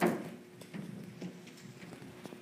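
A single knock at the very start that rings out briefly, followed by quiet room noise with a few faint clicks.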